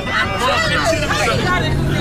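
Several people chatting and laughing over one another inside a bus cabin, with the low rumble of the bus engine underneath; a steady low hum joins about halfway through.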